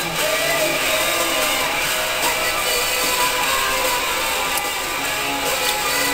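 Background music with guitar.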